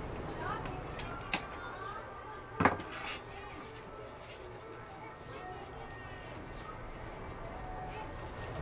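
Two sharp clicks from a part being handled at an inkjet printer, the louder about two and a half seconds in, over background voices and music.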